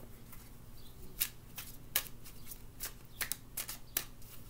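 A deck of oracle cards being shuffled by hand, with about ten sharp, irregular card snaps.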